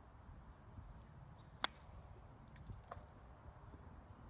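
Golf driver striking a ball off the tee: one sharp crack about one and a half seconds in, followed about a second later by a few faint ticks.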